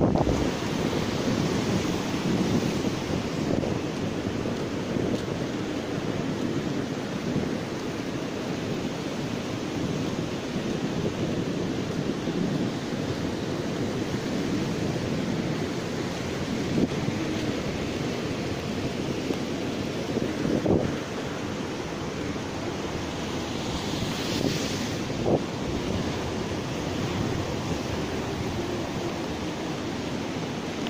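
Sea surf washing onto a sandy beach, a steady rushing noise, with wind buffeting the microphone. A few brief louder bumps come through around the middle and toward the end.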